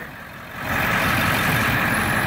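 1999 Ford F250's 7.3-litre Power Stroke V8 turbodiesel idling steadily, getting louder about half a second in.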